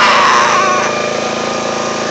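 Small gasoline engine running steadily on a machine, with a louder burst of noise in the first second.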